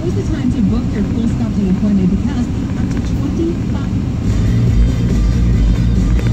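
Car radio playing an advertisement inside the car's cabin: a talking voice for the first few seconds, then music with a strong bass from about four seconds in, over the steady rumble of the car on the road.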